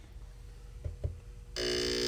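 Model 79 ignition analyzer firing a small-engine ignition coil: after a quieter stretch with a faint hum and two light clicks, a loud steady electrical buzz starts about three-quarters of the way in as the coil sparks across the tester's spark gap. The steady sparking is the sign that the coil is good.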